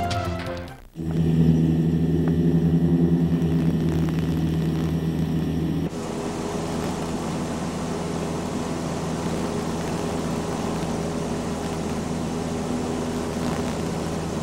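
Light single-engine piston airplane's engine and propeller droning steadily, heard after a short music ending fades out. About 6 seconds in the sound cuts abruptly to a lower, even drone as heard inside the cabin.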